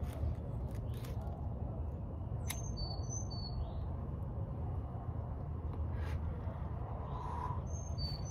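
Small birds chirp a few short high notes a few seconds in, over a steady low outdoor background rumble. A sharp click or two comes from a hand-held lighter being struck to light a cigarette.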